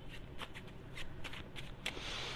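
Tarot deck being shuffled by hand: a string of light, irregular card clicks.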